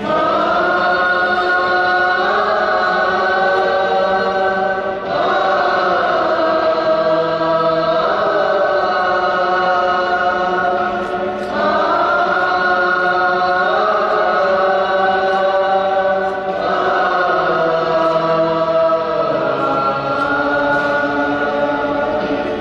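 Choir singing a slow hymn in long held phrases of about five or six seconds each, with short breaks between them.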